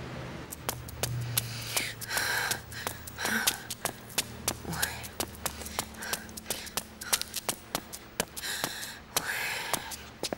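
Footsteps of hard-soled shoes on a hard floor and stairs, a sharp irregular run of steps, with a person's loud breaths heard a few times, longest near the end.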